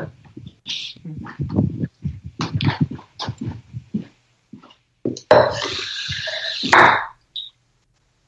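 A man in a coughing fit: a run of short coughs, then a longer, rougher cough about five seconds in.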